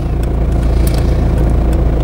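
A car's steady low rumble of engine and road noise.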